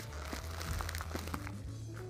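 Thin plastic nursery pot crinkling and clicking as gloved hands squeeze and tip it over to work a cactus out, with a few sharp clicks.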